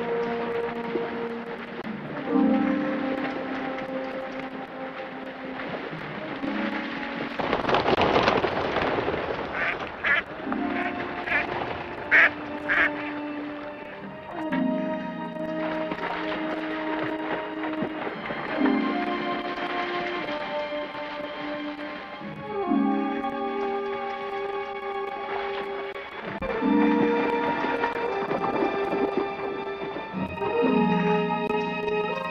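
Orchestral film score: a low, held chord that restarts about every four seconds, with higher sustained notes above it. About eight seconds in comes a noisy swell, followed by a few short, sharp, high sounds.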